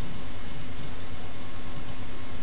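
Klauke EK12042L battery-powered hydraulic crimping tool's electric motor and hydraulic pump running steadily, with an even hum and hiss.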